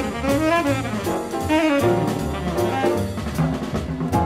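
Small jazz group: a tenor saxophone plays a solo line with wavering pitch, over bass and a drum kit with cymbals.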